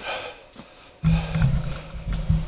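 Camera handling noise as the camera is picked up and turned: a brief rustle at the start, then from about a second in a low rumble with rubbing and knocks against the microphone.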